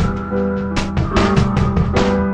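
Background music: sustained low tones under a quick, steady run of sharp percussive hits.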